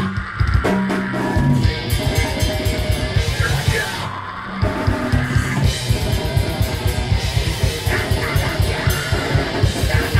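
Metalcore band playing live: distorted guitars over rapid, driving drums, with a short break in the guitars and cymbals about four seconds in.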